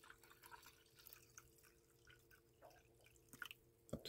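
Near silence: the last faint drips and trickle of sodium silicate solution falling into a glass container as the pour ends, over a faint steady hum.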